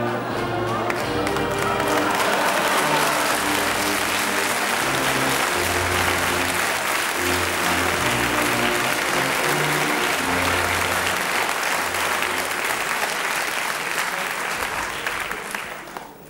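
Audience applause over background music with long held notes, the clapping fading out near the end.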